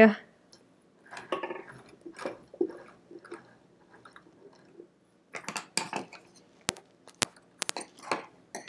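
Hands working at a sewing machine's needle and bobbin area: soft rustling and handling noises, then a run of small sharp clicks in the last few seconds as parts are set in place.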